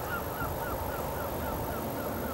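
A bird calling in a fast, even series of short chirps, about five a second, over a steady low rumble.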